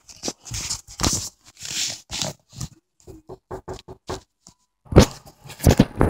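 Handling noise from a handheld camera being carried while someone walks: rustling, bumps and footsteps, then a few loud knocks near the end.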